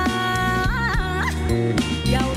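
A woman singing an Ethiopian song live over steady band accompaniment; a held note breaks into a quick wavering ornament a little after half a second in.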